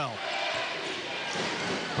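Arena crowd noise during live basketball play, with a ball being dribbled on the hardwood court.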